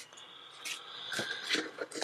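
A sticker pressed onto a paper planner page by hand: a few soft taps and light paper rustling.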